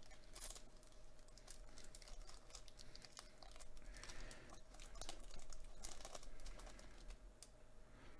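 Foil wrapper of a trading-card hobby pack crinkling and tearing as it is opened, then the cards sliding out. The sound is faint: a dense run of small clicks and rustles over a steady low hum.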